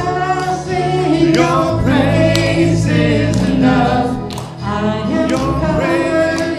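A group of voices singing a Christian worship song with instrumental accompaniment, over a steady beat of about one stroke a second.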